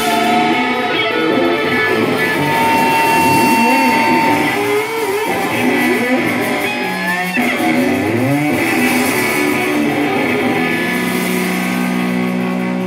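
Electric guitar and bass guitar played live with no drums, sustained notes with several sliding, bending glides in pitch through the middle. A steady low note is held from near the end.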